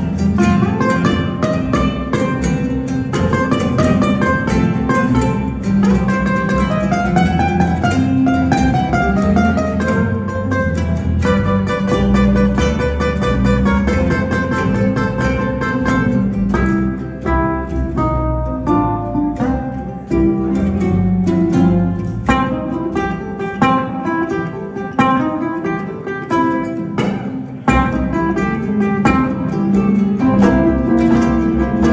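Two ukuleles and an acoustic bass playing an instrumental blues in C, with quick plucked melody runs over a steady walking bass.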